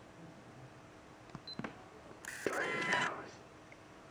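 A few sharp clicks, then a short burst of a person's voice, close and breathy, lasting about a second.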